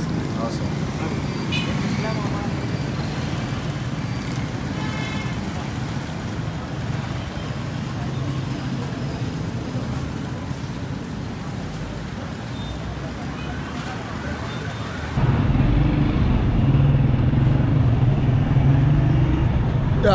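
Busy city street traffic: a steady hum of engines and passing vehicles, with faint voices. About fifteen seconds in, the sound cuts to a louder, lower, steady engine drone close by.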